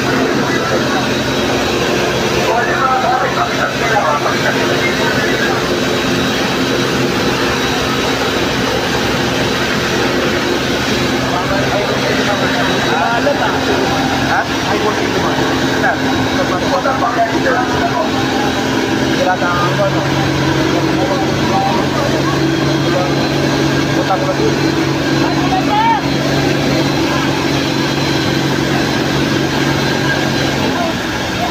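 Fire truck engine running steadily: a low droning hum that rises slightly in pitch and gets louder about twenty seconds in, under the overlapping chatter of a crowd.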